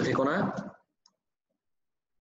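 A voice finishing a phrase, then dead near silence with one faint click about a second in.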